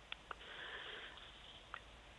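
Faint hiss of an open telephone line, with a few soft clicks, in the pause before the caller answers.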